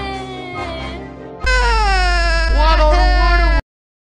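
A cartoon character's voice crying in a high, drawn-out wail that glides in pitch. At about a second and a half a louder wail starts over a low steady hum, then cuts off suddenly.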